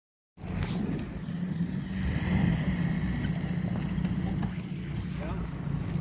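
Mercedes-Benz Sprinter 315 CDI's four-cylinder turbodiesel engine running with a steady low rumble as the van drives on snow, mixed with tyre and wind noise; it starts abruptly about half a second in.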